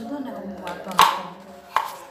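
Kitchen knife slicing peeled fresh turmeric root on a wooden cutting board: two sharp knocks of the blade on the board, about a second in and near the end.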